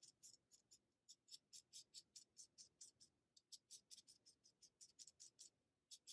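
Felt-tip marker scratching across paper in quick short strokes, about five a second, faint.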